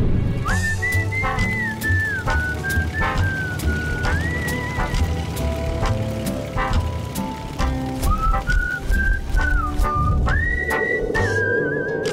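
A whistled melody over a music track with a steady low beat and light percussion. The whistle slides between notes and wavers on its held notes, pausing for a few seconds in the middle before coming back.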